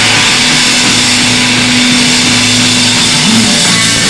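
Live punk rock band playing loud, distorted electric guitar. One note is held for about three seconds and bends up near the end.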